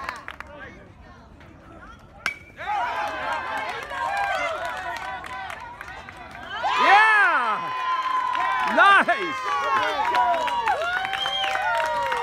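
A single sharp crack of a bat hitting the ball about two seconds in. Then many spectators shout and cheer at once, loudest about seven seconds in.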